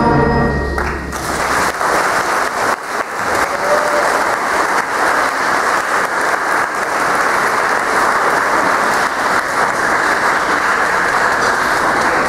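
A school concert band's final chord cuts off under a second in, and the audience takes up steady applause.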